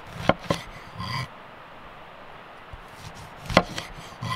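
A large cleaver-style knife cutting through an orange's peel and knocking on a wooden cutting board: two sharp knocks close together near the start and a louder one near the end, with a short squeak about a second in.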